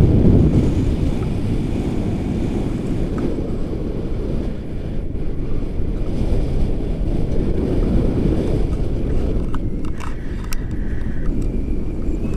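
Airflow buffeting a handheld camera's microphone during a paraglider flight: a loud, steady rumble that swells and eases in gusts. A few sharp clicks come near the end.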